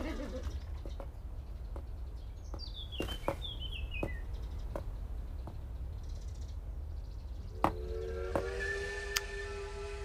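Quiet scene ambience: a bird gives a short series of high chirps falling in pitch a few seconds in, over a low steady hum with scattered faint clicks. Near the end a sustained musical chord comes in and holds.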